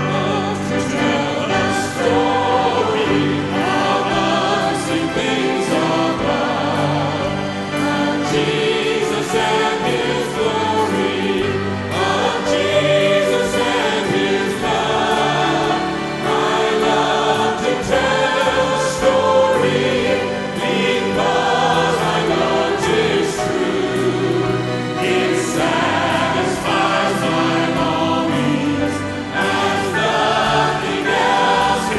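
A mixed group of seven men and women singing a gospel song together.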